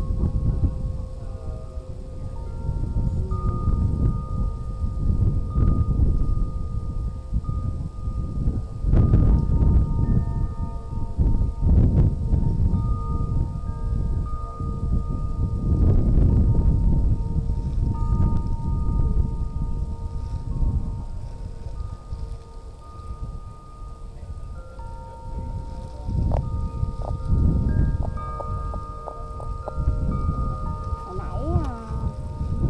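Wind chime ringing in the breeze, several clear tones sounding and overlapping, with a quick cluster of strikes near the end. Gusts of wind rumble on the microphone underneath.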